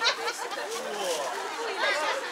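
People talking: voices of passers-by chatting.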